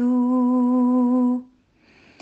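Slow hummed melody of long held notes. One steady note lasts until about one and a half seconds in and stops, leaving a short gap.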